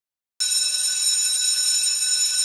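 A steady, high-pitched electronic tone, like an alarm beep, that starts suddenly about half a second in and holds unbroken at one pitch.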